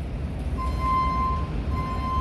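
Steady low hum of a warehouse store's freezer aisle, with a thin, steady high tone coming in about half a second in.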